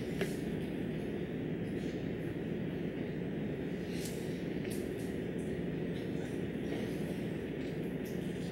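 Dry-erase marker squeaking and scratching on a whiteboard in a few short strokes, over a steady classroom hum.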